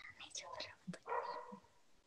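Faint, overlapping voices heard over a video call, with soft fragments of people saying thank you.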